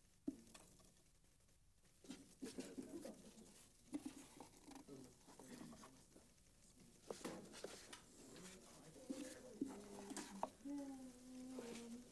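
Faint, indistinct voices that come and go, with a few sharp clicks.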